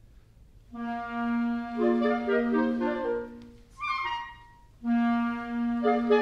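Clarinet ensemble playing: after a short pause, a held low note sounds with clarinet lines moving above it, a brief higher phrase follows, and then the held low note and moving lines return.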